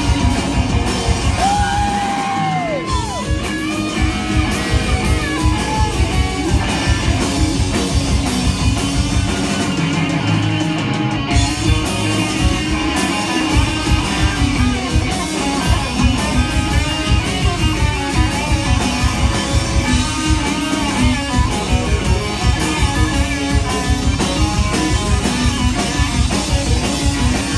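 Live rock band playing loud: electric guitars and bass over a steady drum-kit beat. About two and a half seconds in, a held high note slides down in pitch.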